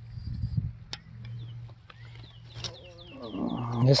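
A low steady hum with a few light clicks, then a quick run of high, falling chirps about three seconds in. A man's low voice comes in over it near the end and is the loudest sound.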